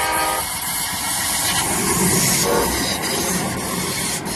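TriMet MAX light rail train giving a short horn blast as it approaches, then passing close by with the rumble and hiss of its wheels on the rails, loudest about two seconds in.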